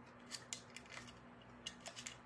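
A few faint, short snips of small scissors cutting a thin rub-on transfer sheet, spaced irregularly.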